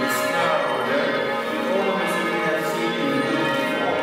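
Bells ringing: several struck tones overlapping, each ringing on with a long decay, with a fresh strike every second or two.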